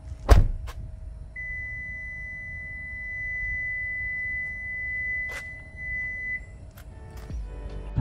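A 2022 Kia EV6's door shuts with a thunk, and about a second later the car sounds one long, steady, high-pitched warning tone for about five seconds. This is the alert for the key being carried out of the car and the door closed while the car is still on. A couple of faint clicks follow near the end.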